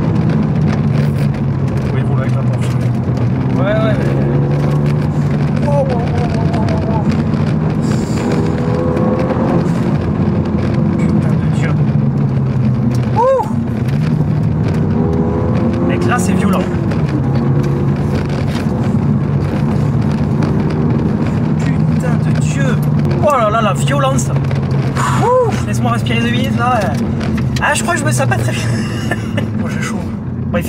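Renault Mégane 3 RS Trophy's turbocharged 2.0-litre four-cylinder engine heard from inside the cabin while driving, holding steady revs that shift up and down several times.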